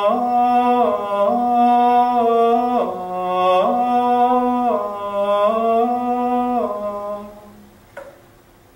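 A man singing a Gregorian chant melody solo and unaccompanied, in long held notes that step up and down among a few neighbouring pitches, the vowels changing as he goes. The singing fades out near the end.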